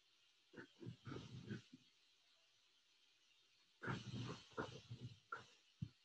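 Pen strokes on the paper of a spiral sketchbook, in two short flurries of quick strokes about half a second in and about four seconds in, heard faintly.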